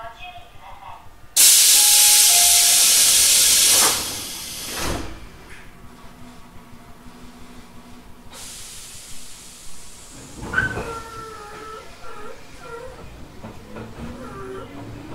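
Tobu 800-series electric train standing at a station: a sudden, loud hiss of released compressed air for about two and a half seconds, then a single thud about a second later, and a softer hiss that sets in later. An onboard recorded announcement starts near the end.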